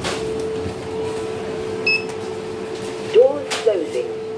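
Otis passenger lift car: a steady hum, a short high beep about two seconds in, then clicks and a brief voice near the end as floor buttons are pressed.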